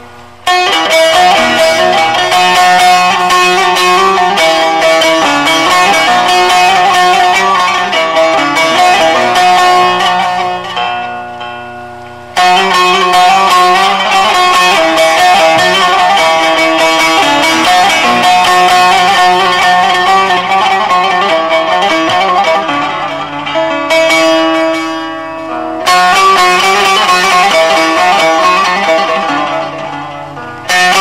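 Solo bağlama (long-necked Turkish saz) played without voice: quick, dense plucked melodic phrases. Twice, about a third of the way in and again near the end, the playing pauses and the notes ring out and fade before the next phrase starts abruptly.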